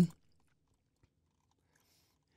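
The tail of a spoken word, then near silence: faint room tone.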